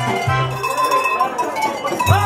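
Live German folk music: an accordion with a set of tuned cowbells rung by hand. The accordion's bass notes drop out about half a second in, leaving the ringing bell tones.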